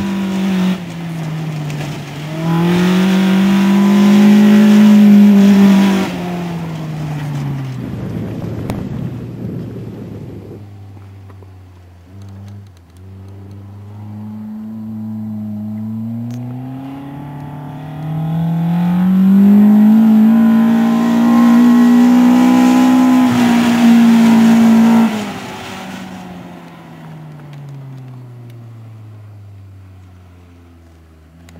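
Toyota Corolla AE86's four-cylinder engine revving hard while drifting on loose dirt: the revs climb and hold high twice, with a hiss of spinning tyres and spraying dirt at each peak, and drop back lower in between. It fades as the car pulls away near the end.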